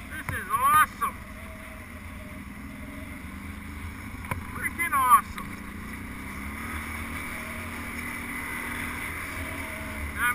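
ATV engine running steadily as the quad climbs a gravel trail at low speed, its pitch rising a little about six seconds in. Two short, wavering higher-pitched sounds cut in, about half a second in and again about five seconds in.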